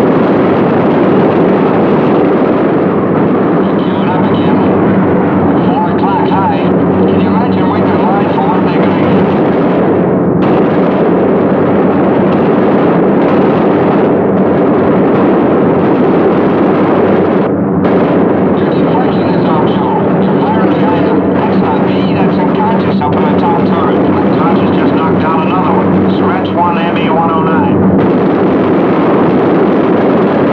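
Steady, heavy drone of a B-17 bomber's four radial piston engines, with indistinct voices coming through it at times.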